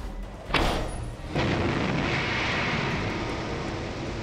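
A sharp bang about half a second in, then from about 1.3 s a steady rushing rocket-thruster noise: an animation sound effect of the Mars Science Laboratory descent stage separating from the backshell and firing its landing engines for powered descent.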